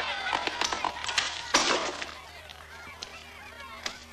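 Someone pounding on a door: a quick run of knocks, ending in one louder bang about a second and a half in, followed by fainter shouting.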